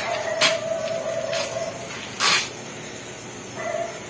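A slatted metal gate being handled and opened, its hinge or roller giving a steady high squeal for about a second and a half and again briefly near the end, with a few sharp metallic clanks and a short scrape a little after two seconds in.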